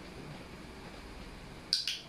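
Two sharp clicks in quick succession near the end, over quiet room tone.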